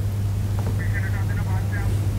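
A steady low hum and rumble, with a faint distant voice calling out for about a second in the middle.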